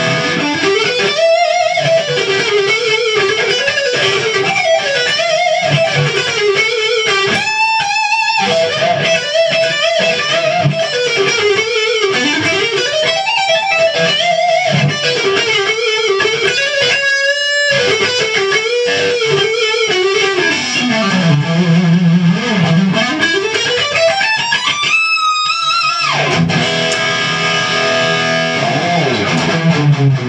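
Carvin CT-6 electric guitar through a Marshall JVM 210H head on its distortion channel and a Marshall 1960A 4x12 cabinet, playing a fast lead line with string bends and slides. Near the end a long slide falls low and climbs back to a high held note.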